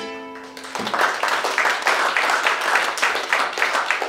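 A final strummed acoustic guitar chord rings and fades within the first second, then a small audience breaks into applause and keeps clapping.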